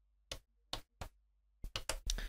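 Front-panel buttons of a Cyclone TT-303 Bass Bot clicking as they are pressed in pattern write mode: a few separate clicks, then a quick run of four near the end.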